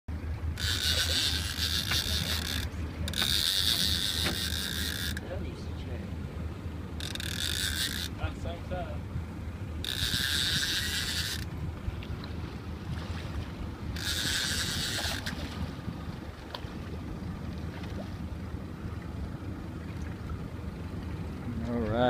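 A small mechanism whirring in five separate bursts of one to two seconds each, over a steady low hum.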